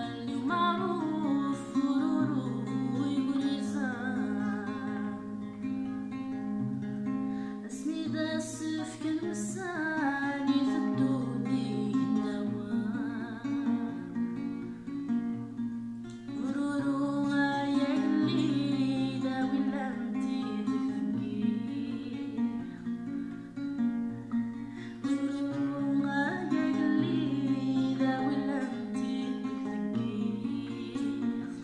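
A woman singing to her own acoustic guitar accompaniment. The guitar plays steadily throughout, and her voice comes in four phrases, with guitar alone between them.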